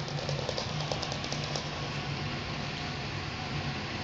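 Puppies' claws clicking rapidly on a hardwood floor for about the first second and a half, over a steady low hum.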